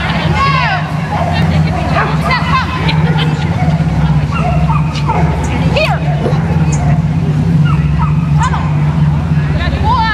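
A steady low engine-like hum under background voices and short high calls.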